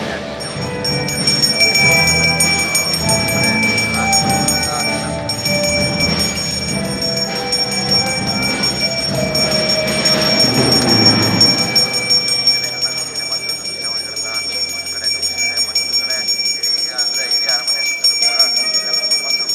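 A puja hand bell rung continuously, a steady high ringing throughout. Music plays beneath it for roughly the first twelve seconds and then drops away.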